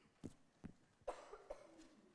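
Quiet room with a cough about a second in, after a few soft knocks.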